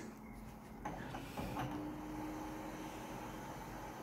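Colour office photocopier starting a copy run, its scanning and feed mechanisms running faintly. A steady low hum comes in after about a second and a half, with a few light clicks.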